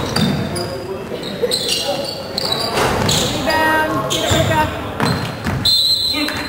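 Basketball game sounds in a gym: a ball bouncing on the hardwood court, sneakers squeaking in short high chirps, and voices echoing in the large hall.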